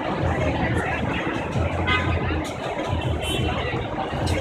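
Busy city street ambience: steady traffic rumble mixed with the chatter of passing pedestrians.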